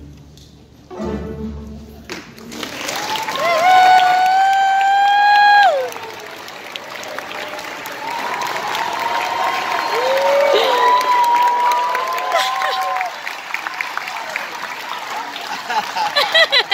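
A youth string orchestra's last notes end in the first two seconds. Then an audience claps and cheers, with long, loud whoops at about four seconds in and again from about eight to thirteen seconds.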